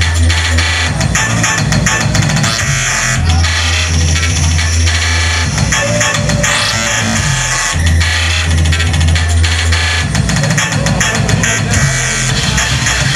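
Loud live electronic music from a laptop and synthesizer set over a club sound system: long held bass notes of about two seconds recur every four to five seconds under dense, noisy upper layers.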